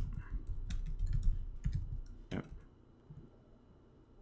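Typing on a computer keyboard: a string of separate key clicks that thins out after about two and a half seconds.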